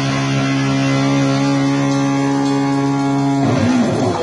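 Distorted electric guitar holding a single chord that rings on steadily without drums, changing shortly before the end.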